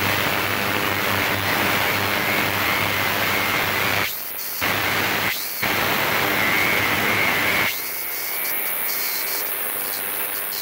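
40 kHz ultrasonic cleaning tank running with carburettor parts in its basket, giving a loud steady hiss from the cleaning bath with a low hum under it. The hiss drops out briefly twice around the middle and turns quieter and duller near the end.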